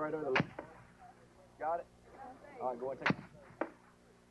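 Indistinct men's voices on a weapons range, cut by sharp, very short reports of weapons firing: a loud one about half a second in, the loudest about three seconds in, and smaller ones just after each.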